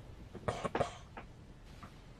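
A man's short, quiet cough, two quick bursts about half a second in; he has a cold.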